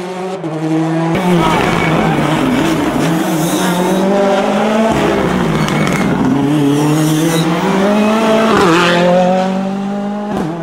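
Ford Fiesta rally car's engine revving hard through a bend. Its pitch climbs, drops sharply on gear changes or braking about halfway through and again near the end, then rises again.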